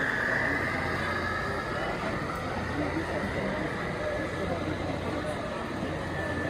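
HO scale model train running past close by, a steady rolling rumble and whir of locomotives and tank cars on the track, over the chatter of a crowded hall.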